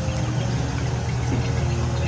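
Gas stove burner running under a wok as it heats, a steady low hum.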